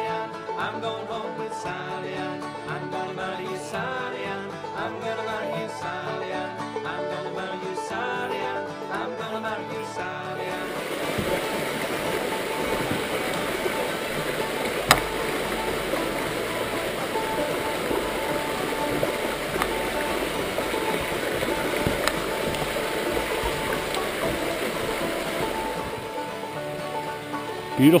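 Background music for about the first ten seconds, then an abrupt cut to the steady rush of a shallow, rocky brook. There is a single sharp click about fifteen seconds in.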